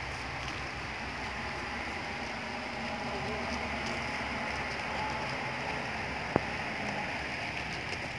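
Steady rushing outdoor background noise, with a single sharp click about six seconds in.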